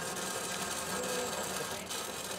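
Steady machine noise, even throughout, with a faint short tone about halfway through.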